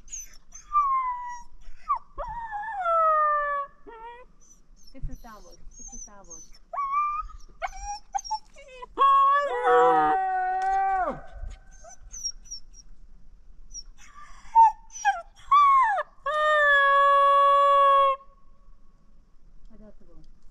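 A dog whining and howling in a series of calls: short high whines that slide down or up in pitch, a cluster of overlapping calls in the middle, and one long steady howl of about two seconds near the end.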